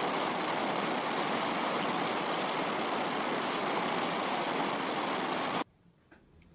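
Steady, even static-like hiss from an intro sound effect, cutting off abruptly near the end.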